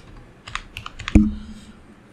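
Computer keyboard being typed on: a handful of separate keystrokes, most of them in the first second or so.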